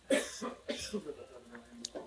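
A person coughing and clearing the throat, two sharp coughs near the start followed by softer throat sounds, with a short click near the end.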